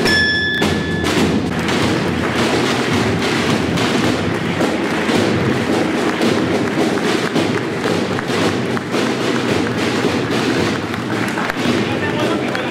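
Crowd applauding in a hall, with drumbeats. A high held note ends about a second in.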